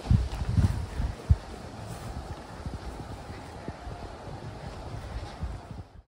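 Wind buffeting the microphone in irregular low rumbling gusts, with one sharp thump about a second in.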